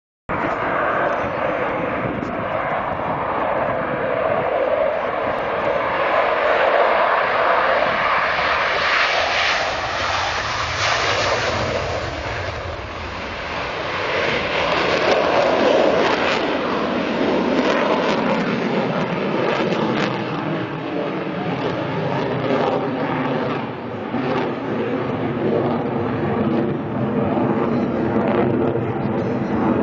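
Jet noise from a MiG-29 fighter's twin RD-33 turbofan engines during a flying display: a loud, continuous rushing roar that swells and eases as the jet passes. Steady whining tones run through it in the second half.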